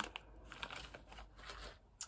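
A few faint crinkles of a plastic snack packet being handled.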